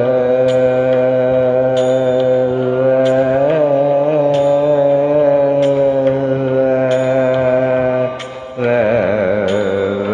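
Carnatic vocal music in raga Thodi: a male voice holds one long steady note for about eight seconds, then after a brief break moves into rapidly oscillating gamaka ornaments near the end. Faint clicks mark a beat about once a second under the voice.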